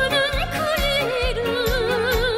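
A female solo voice singing with a wide, even vibrato, backed by an electronic pop ensemble with a steady beat of about two low pulses a second.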